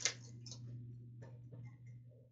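Hockey trading cards being handled and sorted by hand: one sharp snap at the start, then a few faint ticks as the cards are flicked through, over a steady low hum.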